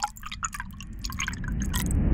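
Sound effects of an animated logo intro: scattered small drip-like ticks and clicks over a low rumble that begins to swell near the end.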